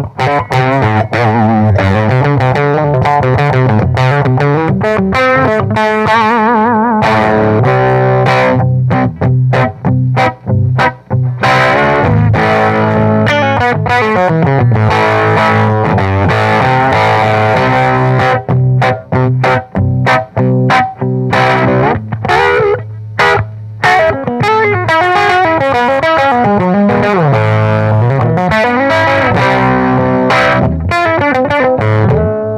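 Gibson Les Paul electric guitar played straight through a mid-1960s Panasonic AM world band transistor radio used as its amplifier, with no effects, overdrive or EQ. Chords and runs go on almost without stopping, with a few brief breaks in the middle.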